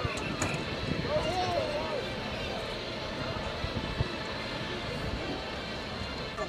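Outdoor stadium background: a steady noise with faint, distant voices and shouts from the field and sideline, plus one small click about four seconds in.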